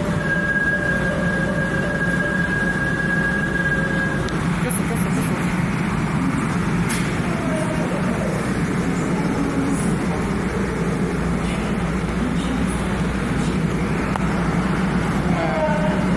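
Korail electric commuter train pulling into the platform: a steady rumble with a high electric whine for the first four seconds, and falling motor tones near the end as it brakes.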